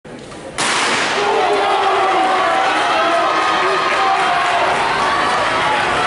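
A starter's pistol fires for the relay start about half a second in, then a crowd of spectators keeps cheering and shouting loudly.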